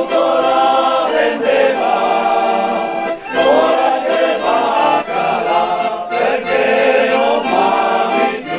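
A small male choir singing together from sheet music, in sung phrases with brief breaks for breath between them.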